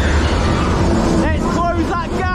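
Dodgem car driving across the steel floor, with a steady low rumble and noise all through. A high voice calls out in short bursts in the second half.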